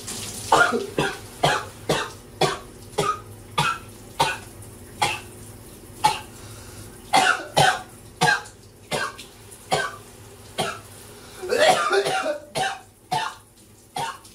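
A man coughing over and over, a long run of single coughs roughly every half second, with a denser coughing fit about twelve seconds in. Faint running shower water hisses underneath. The coughs come from a throat irritation he puts down to a bug.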